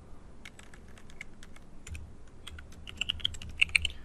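Computer keyboard typing: scattered key clicks, coming quicker in the second half.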